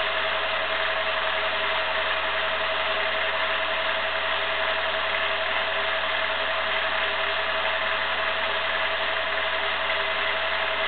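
Home-movie film projector running: a steady mechanical whir with a constant hum tone.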